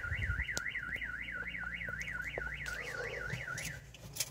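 Aftermarket car alarm siren warbling, its pitch rising and falling about four times a second, set off by the shock sensor after a knock on the dashboard. It cuts off shortly before the end.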